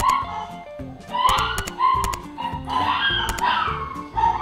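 A dog barking in a series of short, high yelps that sound as if she is being hurt rather than barking properly, over background music.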